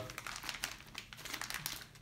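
Clear plastic zip-lock parts bags and their wrapping crinkling and rustling as they are handled, in irregular crackles.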